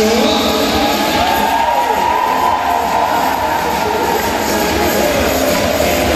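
A loud jet-like rushing sound effect over the hall's sound system. Its pitch rises over about two seconds and then slowly falls away.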